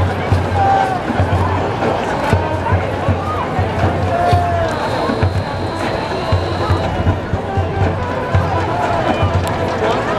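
Marching band playing a funk tune, brass over a steady low drum beat that pulses about twice a second.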